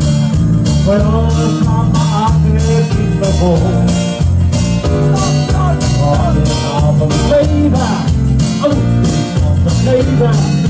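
Live band playing an upbeat number with electric guitars, keyboard and drums, a steady beat of about two drum strokes a second under a strong bass line.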